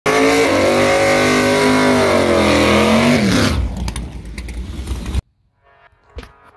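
Drag-prepped carbureted Ford Mustang Cobra V8 held at high revs for about three seconds, then the revs fall away into a rougher, noisier rumble. The sound cuts off abruptly about five seconds in.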